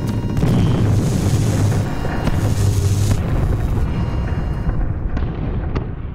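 Sound-effect explosions and a heavy, continuous low rumble, as of a ship under pirate attack, with music underneath. The rumble dies away over the last two seconds, with two brief high pings near the end.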